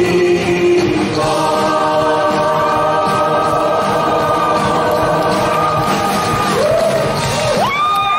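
Mixed male and female voices singing together live with band accompaniment, holding a long sustained final chord. Near the end the audience starts to cheer.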